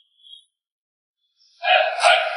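Near silence for about a second and a half, then a loud, voice-like pitched sound starts abruptly near the end.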